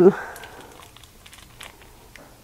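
Thin plastic sausage-chub wrapper crinkling in the hand as raw ground breakfast sausage is squeezed out of it, a few faint scattered crinkles and ticks.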